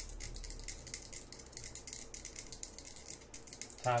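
A fast, light rattling of small clicks, many to the second.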